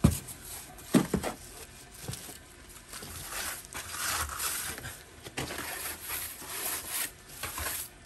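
Builders' trowels scraping and packing wet mortar against the outside of a metal recessed manhole-cover tray frame, bedding it into the frame's groove. There are two sharp knocks, one at the very start and one about a second in.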